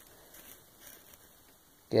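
Faint rustling of a paper instruction sheet being handled, a few soft brushes about half a second and a second in.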